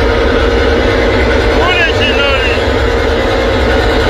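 Loud, distorted music from a stage PA system at a live show: a deep steady bass drone under a held note, with a short warbling vocal phrase about two seconds in.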